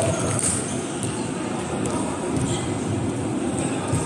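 Large indoor sports hall's room sound: a steady low rumble with faint distant voices of players and an occasional knock.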